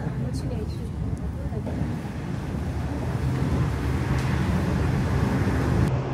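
Steady low rumble of a high-speed train running, heard from inside the passenger carriage, growing a little louder through the second half.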